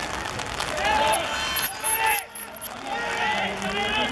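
Several people shouting and calling out across a football pitch, the high-pitched calls of players and spectators overlapping. The sound drops out briefly about two seconds in.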